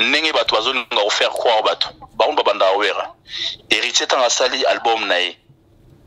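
Speech only: a voice talking in four quick phrases with short pauses between them.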